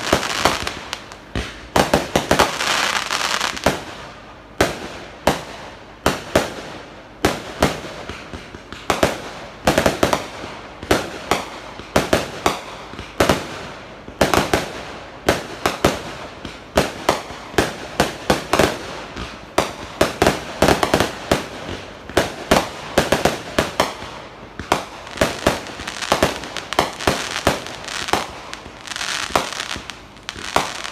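Fireworks display: aerial shells bursting one after another, dozens of sharp bangs, often several a second, with stretches of crackle between them.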